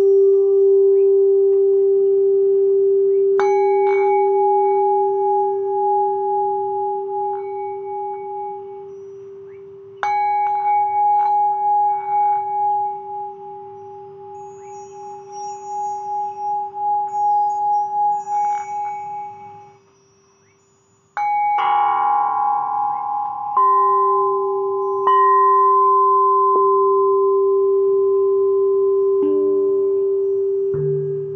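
Singing bowls struck with mallets and left ringing: a steady low tone with a slow pulsing swell, joined by higher ringing tones as new strikes land about three seconds in, around ten seconds in and again near the end. The sound dies away briefly after about twenty seconds, then a brighter strike full of overtones starts the ringing again.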